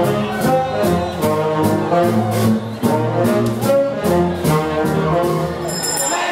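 Swing big band playing live: a brass and saxophone section with trumpets and trombones over drums keeping a steady beat.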